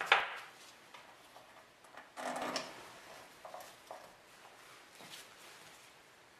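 Small metal clicks and knocks as zinc-plated bolts are handled and set into the water pump housing of an outboard's lower unit. There is a sharp click at the start, a brief louder handling noise about two seconds in, then a few lighter clicks.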